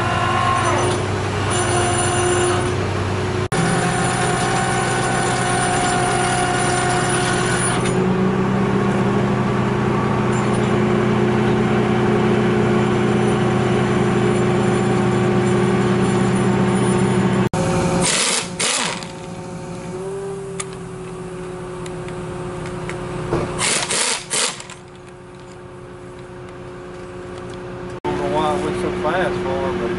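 Heavy logging machinery's diesel engine running steadily, its tone shifting a few seconds in and again near the middle. After an abrupt cut about two-thirds of the way through it is fainter, with two short noisy bursts.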